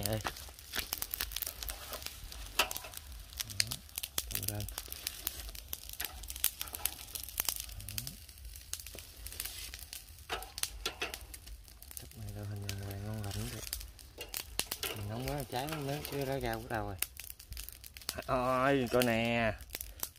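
Rapid, irregular crackling and crinkling clicks from handling salt-crusted grilled tilapia on a hot charcoal grill and laying them on banana leaves. The clicks are densest in the first few seconds and thin out later.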